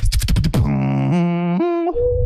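Solo beatboxing: a quick run of sharp percussive mouth sounds for about half a second, then a held vocal note over a low bass that steps up in pitch twice.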